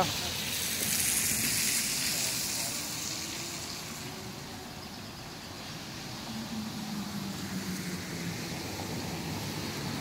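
Steady rush of a flooded, fast-running river under a road bridge. A vehicle passes in the first few seconds, swelling and then fading.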